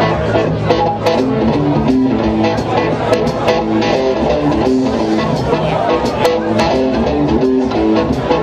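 A live rock band playing: an electric guitar riff of repeating stepped notes over bass guitar and drums, with regular cymbal and drum hits.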